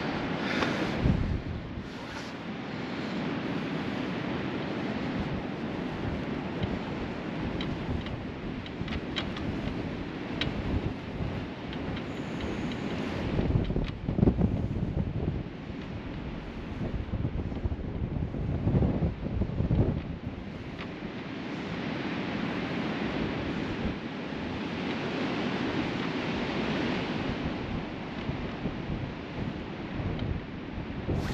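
Wind buffeting the microphone: a steady rushing noise that swells in a few louder gusts, about halfway through and again a few seconds later.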